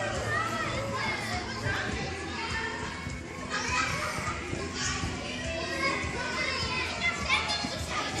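Several young children's voices chattering and calling out over one another, overlapping throughout, in a large gym hall.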